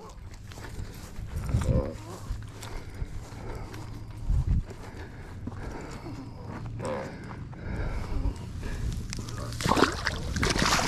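Footsteps and rustling through dry grass while a large blue catfish is carried along the bank, with a few short low grunts. A louder scuffing rustle comes near the end.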